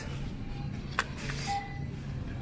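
Faint background music over a steady low hum, with a sharp click and a brief crinkle of a plastic curry-roux packet being handled about a second in.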